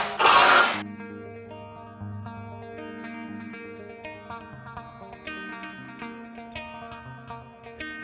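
A cordless impact driver runs briefly on a railing post's base-plate screws, loosening them, and stops under a second in. Background guitar music follows, plucked notes over a low bass line.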